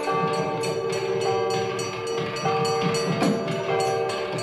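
South Indian temple nadaswaram music: a reed pipe plays held melody notes that change about once a second over a steady drone, with regular percussion strokes.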